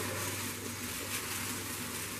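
Tissue paper rustling and crinkling as small gifts are unwrapped, a steady papery noise with a few faint ticks.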